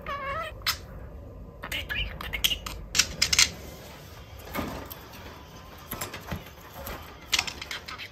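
Budgerigar chattering, with a short wavering warble at the start and bursts of sharp clicks, densest two to three and a half seconds in.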